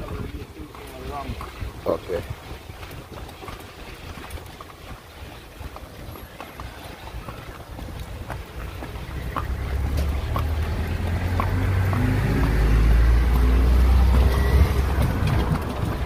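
Street sound: quiet at first with a few scattered faint knocks, then the low rumble of a motor vehicle that builds through the second half and is loudest near the end before easing off.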